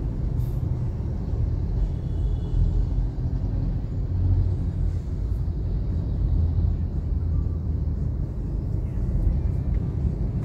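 Steady low rumble inside a car's cabin while the car sits stopped in traffic, its engine idling.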